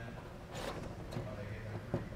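Faint handling noise as wires are fed back through a hole in a plywood wall, with a soft scrape about half a second in and a small click near the end.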